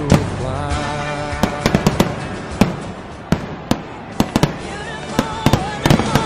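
Fireworks going off in a rapid, irregular string of sharp bangs and crackles, a dozen or more over the few seconds, over background music.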